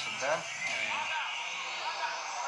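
Speech: a male sports commentator's drawn-out hesitation "e" and further voice sounds, over the steady background noise of a TV broadcast.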